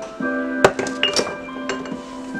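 Several sharp clinks and knocks of a pestle striking peppercorns in a marble mortar as they are crushed coarsely, over steady background music.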